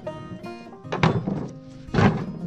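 Background music plays while a log is set down on a cart's wooden deck, giving two heavy thunks, about a second in and again at the end.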